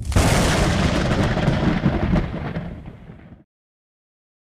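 A sound-effect boom like an explosion: sudden and loud, with a rumbling tail that fades away over about three and a half seconds.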